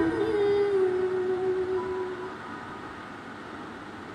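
A woman's sung voice holding the final note of a song. The note fades out over about two seconds along with the backing music, leaving a faint hiss.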